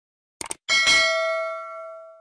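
A quick double click, then a bright bell ding that rings on and fades out over about a second and a half: the click-and-bell sound effect of a subscribe-button and notification-bell animation.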